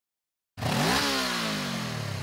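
Motorcycle engine revving, starting suddenly about half a second in: the pitch climbs quickly for about half a second, then falls slowly as the revs drop away.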